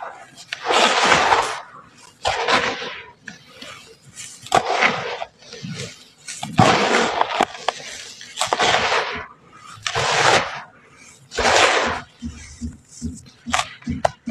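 Hands scooping dry red dirt and letting it pour back into a plastic tub: a grainy rushing hiss that comes in about seven separate pours, each around a second long. Near the end come shorter, quicker pats as the fingers press into the dirt.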